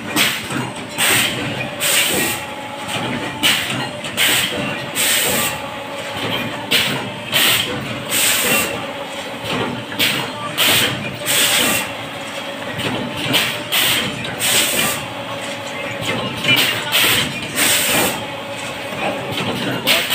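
Automatic dona paper plate press running: repeated short hisses, roughly one or two a second, as its press cylinders cycle, over a steady machine hum.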